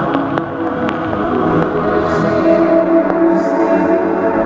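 Instrumental music with sustained chords, scattered sharp clicks and a couple of short hissy swells.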